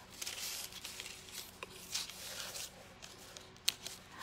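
Faint crinkling, scraping and tearing of parchment paper as a knife is worked under hardened isomalt cookie wings to peel them loose, with a sharp click near the end.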